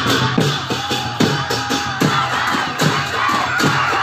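Festival drums and cymbals beating a fast, even rhythm of about three to four strikes a second, with a crowd shouting over it.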